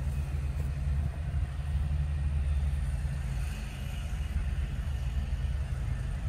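Steady low rumble with no distinct event.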